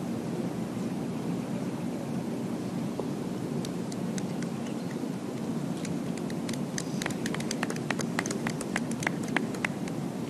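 Scattered applause from a golf gallery: a few separate hand claps starting about three and a half seconds in, thickening into light clapping near the end, over steady low background noise.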